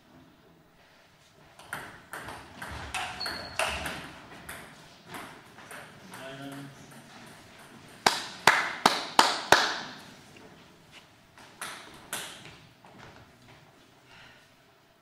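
Table tennis ball clicking off bats and table in a doubles rally, several quick sharp hits, with a brief voice partway through. Then a run of five loud, sharp claps or knocks about a third of a second apart, followed by a few more ball clicks.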